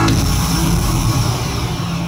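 Final held bass-heavy chord of a pop backing track, fading out gradually as the song ends, with the singing already stopped.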